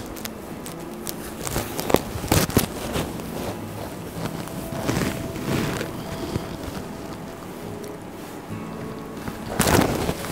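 Soft background music under the rustle of a tussar silk sari being gathered and handled, with a few short swishes of the cloth about two and five seconds in.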